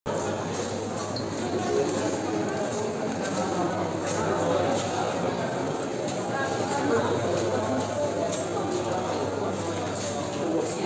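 Indistinct chatter of shoppers and vendors, continuous and at a steady level, in a large indoor market hall.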